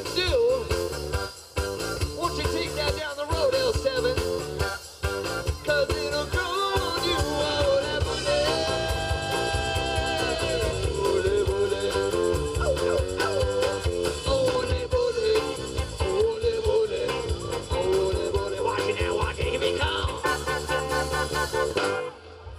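A live band playing an upbeat song: electric guitars over drums, with a tambourine and a shaker played along. A held note sounds for about two seconds near the middle.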